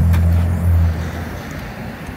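A car engine idling with a low, steady hum that fades away about a second in.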